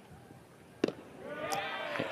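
A single sharp pop a little under a second in: a pitched baseball hitting the catcher's mitt, taken for ball four. Voices begin near the end.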